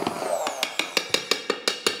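Immersion blender running just under the surface of a pot of soup to whip up foam. It sputters as it draws in air, making a rapid, even run of sharp slaps or clicks, about six or seven a second.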